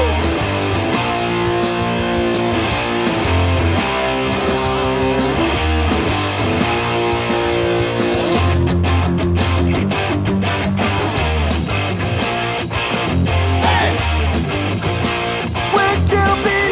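Punk rock band playing an instrumental stretch of a song on distorted electric guitars and bass, with no singing.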